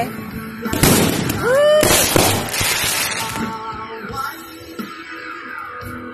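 Consumer fireworks crackling and hissing in two loud bursts, one about a second in and a longer one from about two to three seconds, with a person's short whoop between them. Faint music plays throughout.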